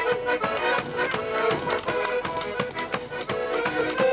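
Polish folk band (kapela) playing a lively tune: accordion carrying the melody over a double bass, with a large hand-held drum beating a fast, steady rhythm.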